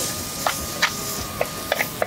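Metal spatula stirring and scraping small onions and ginger-garlic paste as they sauté in a clay pot, with several sharp clicks of the spatula against the pot.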